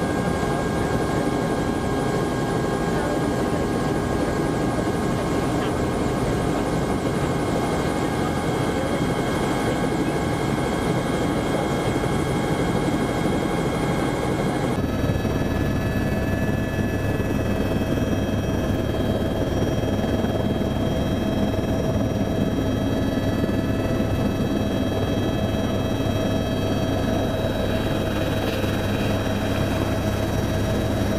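Helicopter turbine engine and rotor running, heard from inside the cabin as it air-taxis and climbs out: a steady whine of several tones over a low rotor drone. About halfway through the sound changes suddenly, to a stronger low drone and a different set of whine pitches.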